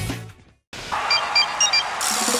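A song fades out into a moment of silence. Then a hissing whoosh comes in with a quick run of short, high electronic beeps at a few set pitches, like a gadget or computer sound effect in a cartoon soundtrack.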